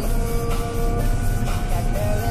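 Fendt 724 tractor's six-cylinder diesel engine and drivetrain running steadily under way on the road, heard as a low drone inside the cab. Music plays over it.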